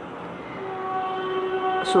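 Canon imageRUNNER 2002 photocopier's internal motors and fans running with a steady hum of several tones, just after its start-up correction, with the machine now ready to copy. A new set of tones sets in about half a second in.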